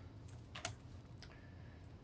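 A few faint keystrokes on a computer keyboard, typing a colon and pressing Enter.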